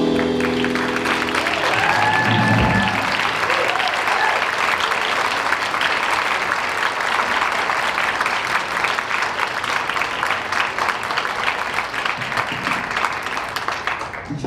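Audience applauding a live jazz combo, rising as the band's last held chord dies away in the first second or so. The dense clapping then carries on steadily.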